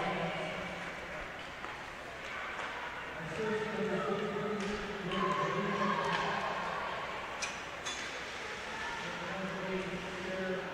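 An amplified voice over the arena's public-address system echoing around the rink, likely the goal announcement. A few sharp clicks, such as sticks or the puck on the ice, sound during it.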